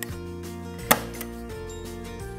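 A desktop stapler snapping shut once, about a second in, driving a staple through folded paper, over steady background music.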